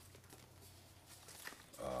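Quiet room tone with a low steady hum during a pause; a man's voice starts again near the end.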